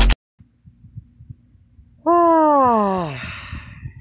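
A person's voice giving one long groan that falls steadily in pitch, starting about halfway through, after a quiet stretch with faint low rumble.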